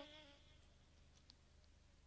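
Near silence: a pause between musical phrases, with faint hiss and low hum from the old recording after a held instrumental note dies away in the first half second.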